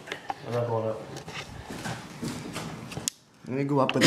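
Light knocks and clatter of someone moving on wooden ladder steps, with a brief stretch of a man's muttered voice near the start. The sound cuts out sharply for a moment near the end before the voice returns.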